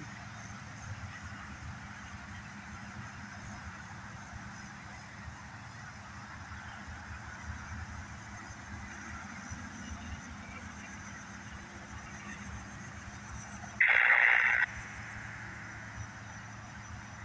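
Steady low rumble of an approaching freight train, broken near the end by one short horn blast from the locomotive lasting under a second, much louder than the rumble.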